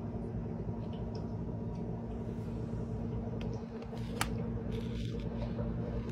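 Steady low electrical hum, with the soft rustle of a phone being handled up close and a single sharp click about four seconds in.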